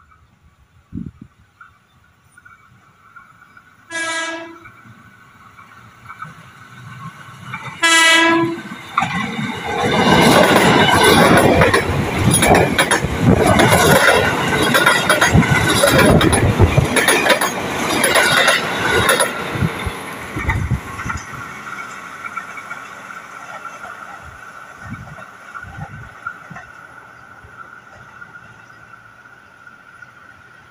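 Electric commuter train (KRL) sounding two short horn blasts about four seconds apart, then passing close by with loud wheel-on-rail clatter for about ten seconds, fading as it runs away.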